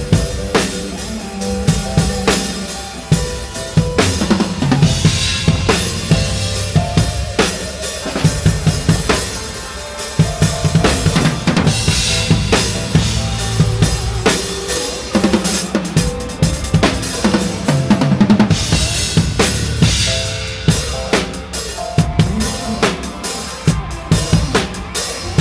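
Drum kit played live, kick and snare keeping a steady beat with cymbal crashes, close-miked and loud over the band's music.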